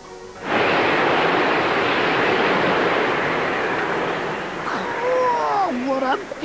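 Cartoon sandstorm wind: a loud, steady rush of blowing noise that starts suddenly about half a second in, cutting off soft music, with a few falling, gliding tones near the end.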